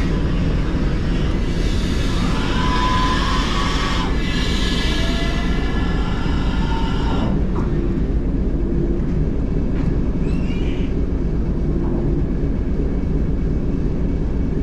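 BR Standard 9F steam locomotive 92134 rolling slowly on the rails while being shunted cold, with no fire in it yet: a steady low rumble, with a few rising metallic squeals in the first half.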